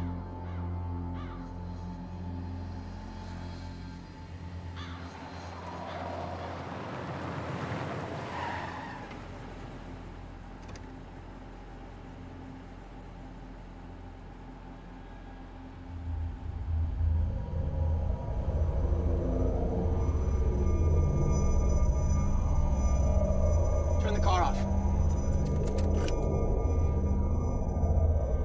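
Film soundtrack: tense, low sustained score. About halfway through, a deep rumble swells in and stays loud.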